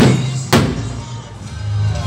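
Loud music with steady bass notes, cut through near the start by two sharp firework bangs about half a second apart, each trailing off in an echo.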